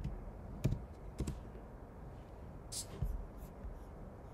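A few scattered keystrokes on a computer keyboard: sharp, separate clicks spread over the seconds as a line of code is finished.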